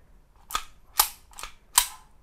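Four sharp metallic clicks from a CZ Shadow 2-type pistol's hammer and trigger being worked dry, showing its double-action/single-action mechanism. The second and fourth clicks are the loudest.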